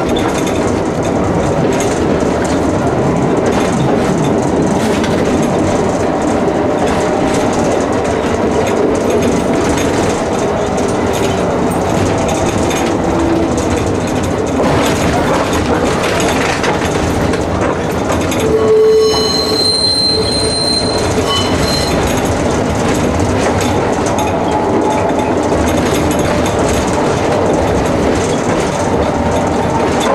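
Interior of a 1949 two-axle type N tram (Konstal, German KSW wartime design) running along the track, its car body rattling and its wheels clattering over the rails. About two-thirds of the way through, the wheels give a brief high squeal.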